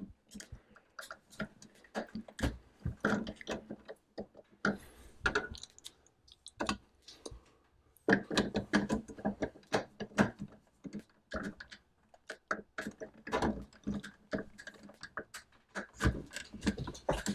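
Hard plastic clicks, knocks and scraping as a refrigerator water filter cartridge is pressed and worked into its filter housing until it seats, in irregular clusters with a couple of short pauses.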